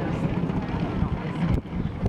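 Wind rumbling on the microphone outdoors, with faint indistinct chatter of people in the background and a brief knock about one and a half seconds in.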